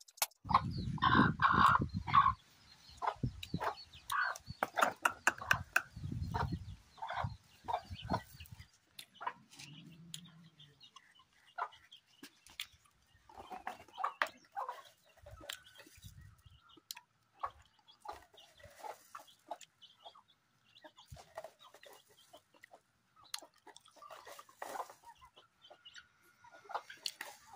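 Chickens clucking while a flock of hens and chicks feeds on scattered grain, with many short pecking taps. Louder, denser bursts of sound come in the first couple of seconds and again a few seconds later.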